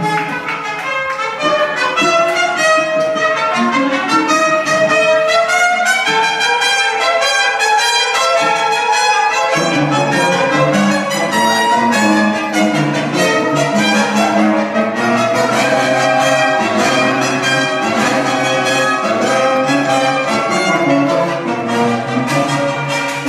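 Orchestral music with strings and brass playing a melody over held chords; a lower bass part comes in about ten seconds in.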